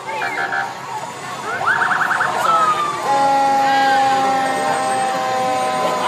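Fire engine's siren giving a brief rapid yelp about two seconds in, then a long steady blast of its horn, several tones held together, from about three seconds to the end.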